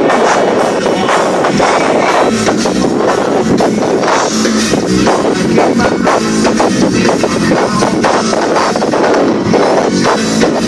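Live band playing loud amplified music with electric guitars and a drum kit, heard from the audience.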